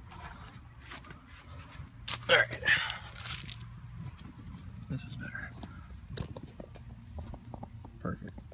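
Handling noise from a phone camera being moved about: scattered clicks, rubs and rustles. A short, loud, breathy vocal sound comes about two seconds in, over a faint steady low hum.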